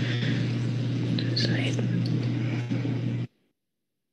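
An open conference microphone passing a steady low electrical hum and faint, indistinct background voices. It switches on abruptly and cuts off just as suddenly about three seconds in.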